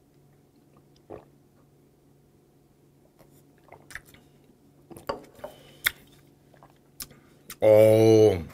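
Quiet mouth sounds of a man swallowing a sip of makgeolli: a few small clicks and lip smacks, with a light knock about four seconds in as the drinking bowl is set down. Near the end comes a loud, short voiced "aah" breathed out after the drink.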